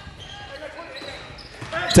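Quiet sound of basketball play on a gym's hardwood court: the ball bouncing on the floor, with one sharp smack near the end.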